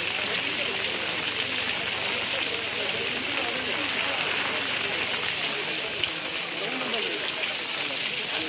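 Steady rain falling, an even hiss that holds through without a break, with voices murmuring faintly in the background.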